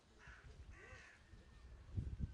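Two short, harsh bird calls in quick succession, crow-like caws, heard faintly over a low rumble.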